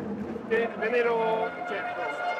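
Only speech: a man talking in Italian.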